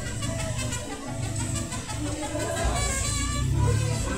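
Music playing over the low, steady running of a double-decker tour bus's engine.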